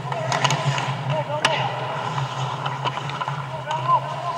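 Live ice hockey play heard from the goal: sticks and puck clacking, with the sharpest crack about one and a half seconds in, skates on the ice, and players shouting short calls, over a steady low arena hum.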